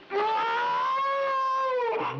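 A single long wailing cry held on one high note for nearly two seconds, rising slightly and then sagging at the end.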